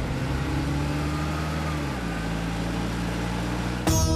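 A motor vehicle's engine running steadily, its pitch shifting about halfway through.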